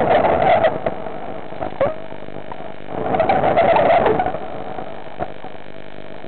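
A diver breathing through underwater gear: two long bursts of breath and exhaled bubbles, about three seconds apart, over a steady electrical hum.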